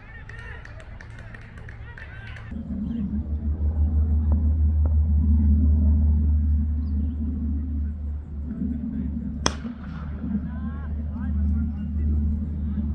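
A cricket bat striking the ball: a single sharp crack about three quarters of the way through, with players' shouts straight after. Under it runs a loud, uneven low rumble.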